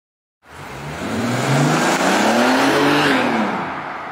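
Bentley Continental GT engine and exhaust revving: the sound starts suddenly about half a second in, the engine note climbs in pitch, peaks near the three-second mark, then drops back and fades.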